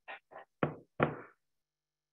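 A quick run of four knocks, the last two about half a second apart and the loudest.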